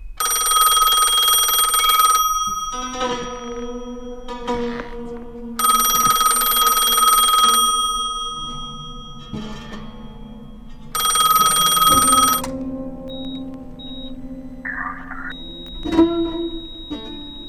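Old rotary-dial telephone's bell ringing in three bursts of about two seconds each, several seconds apart, with music playing between the rings.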